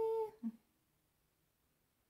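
A woman's voice ending a drawn-out "hey" held on one steady pitch, with a short voiced sound about half a second in; after that, near silence with only room tone.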